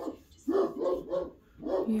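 Pregnant Great Dane vocalizing in a run of short rising-and-falling whines while nesting before whelping.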